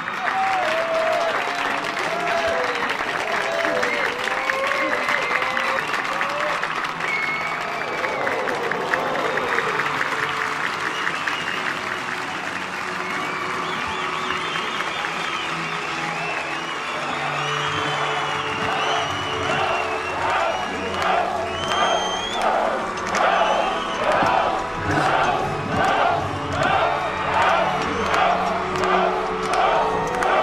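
Live concert audience cheering, shouting, whistling and applauding. About twenty seconds in, a steady beat sets in, roughly once a second.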